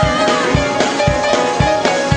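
Up-tempo gospel praise music from a church band, a drum beat driving at about four strikes a second under sustained chords.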